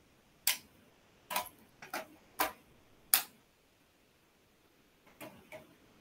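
A series of sharp, irregularly spaced clicks, about seven over the first three seconds, then two fainter ones near the end.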